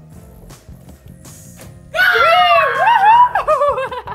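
Background music with a steady beat. About two seconds in, a child gives loud wordless squeals that slide up and down in pitch for about a second and a half.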